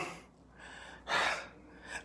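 A man's short, audible breath, a sharp intake of air about a second in, with a fainter breath just before it.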